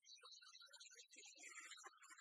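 Near silence, with only faint, scattered, indistinct sound.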